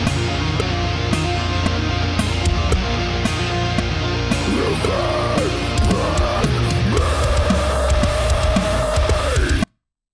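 A recorded metal song playing back: distorted guitars, bass and drums, joined about halfway in by a melodic line that slides in pitch. It stops abruptly just before the end, as playback is halted.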